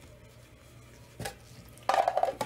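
Trading cards and a plastic card holder handled on a table: one sharp click a little over a second in, then a quick run of clicks and plastic rattling near the end.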